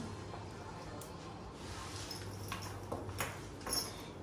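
Pen writing on paper with soft paper handling and a few light taps, over a faint steady low hum of room noise.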